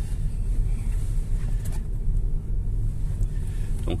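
Steady low rumble of road and tyre noise inside the cabin of an MG5 electric estate car while it is being driven.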